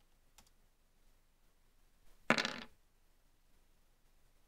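Dice rolled onto a table: one short rattling clatter about two seconds in, lasting under half a second.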